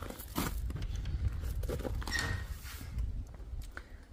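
Footsteps on coarse gravel up to a toilet-block door, then a series of clicks and knocks as the lever handle is turned and the door is pushed open, over a steady low rumble of wind on the microphone.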